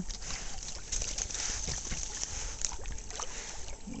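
Water sloshing and small splashes against the hull of a small canoe, with scattered light knocks.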